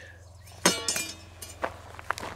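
Bent steel blade from a giant pair of scissors clanking: one sharp metallic hit with a short ring about two-thirds of a second in, followed by a few lighter clinks.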